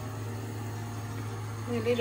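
Steady low hum with an even hiss, from a kitchen extractor fan running over the stove. A woman's voice comes in briefly near the end.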